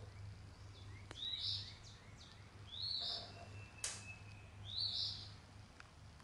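A bird chirping: a short, rising, high-pitched call repeated about every one and a half seconds, over a faint low steady hum. A single sharp click comes a little before four seconds in.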